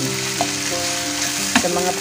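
Onions frying in oil in a pan, sizzling steadily while being stirred. A utensil clacks against the pan twice, and a steady low hum runs underneath.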